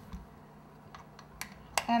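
A manual pasta machine being handled, with a few light clicks in the second half, the last and sharpest just before speech, as its thickness setting is moved down a notch.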